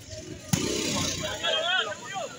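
A single sharp slap of a hand striking the ball about half a second in, amid shouting and talk from players and onlookers.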